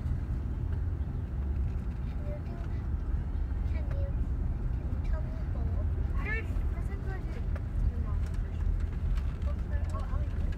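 Car in motion heard from inside the cabin: a steady low rumble of engine and road. Faint snatches of voice come through in places.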